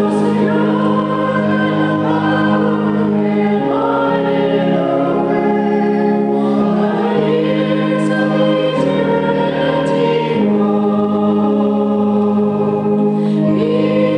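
A woman's lead voice and a small group singing a hymn together, over held keyboard chords that change every second or two.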